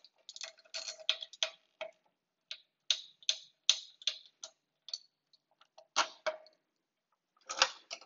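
Ratchet wrench clicking in short, irregular runs as a nut is backed off.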